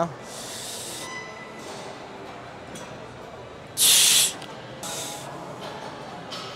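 A weightlifter's sharp hissing breaths while setting up under a loaded squat bar, the loudest a half-second burst about four seconds in, over faint gym background noise.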